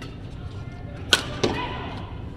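A badminton racket strikes a shuttlecock with a sharp crack about a second in, followed shortly by a second, weaker sharp sound from the court, over a steady low hall hum.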